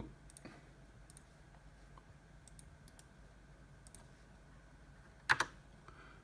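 Faint clicks of a computer mouse and keyboard, with a louder pair of sharp clicks about five seconds in, over a faint steady hum.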